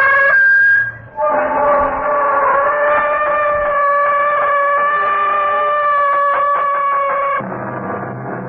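A creaking-door sound effect: one long, loud, slow creak with a wavering pitch and a gritty grain in places, briefly broken just under a second in. It stops suddenly near the end as low music comes in.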